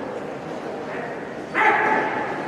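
Murmur of a large sports hall, then about one and a half seconds in a sudden loud, sharp shout, such as a fighter's kiai or a cornerman's yell during a karate bout.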